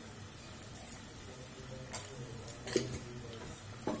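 Quiet cooking sounds from a kadhai of yam pieces in tamarind water heating on a gas flame: a faint low hum with a few soft ticks and clicks, about two seconds in and near the end.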